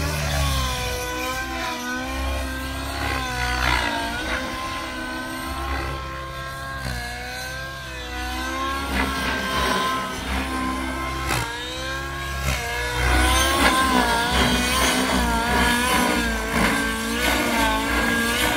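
Nitro glow engine and rotors of a Goblin Raw 700 Nitro RC helicopter in flight, a continuous whine whose pitch keeps rising and falling as the throttle and blade load change through manoeuvres. It gets louder for the last few seconds.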